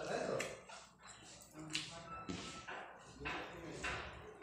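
Close-up eating sounds: wet chewing and lip smacks, with fingers squishing rice and fish curry together on a plate. A short voice-like sound comes right at the start, and a brief thin whine comes about halfway through.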